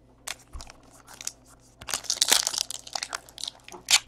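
Foil wrapper of a trading-card pack crinkling and tearing as it is opened by hand. A few scattered crackles come first, then a denser run of crinkling about two seconds in, and one sharp crackle near the end.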